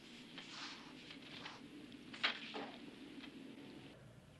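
Faint scrapes and knocks of a long pole worked over the hard floor of a drained, echoing pool, with one sharper knock a little over two seconds in, over a low steady background.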